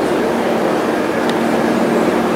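Steady mechanical drone: a continuous low hum under an even hiss, with a few faint clicks.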